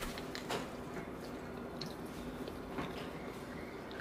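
A person chewing a bite of a cream-cheese-filled macaron, faint, with a few small scattered clicks.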